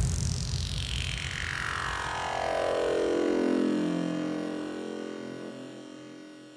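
Synthesized downward sweep ending an electronic music intro: a hiss that falls steadily in pitch from very high to a low hum over about four seconds, then fades out.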